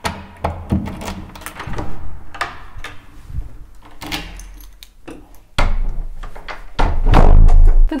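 Wooden apartment front door being worked: handle and latch clicks and knocks, then pretty loud, heavy low thuds near the end as the door swings shut.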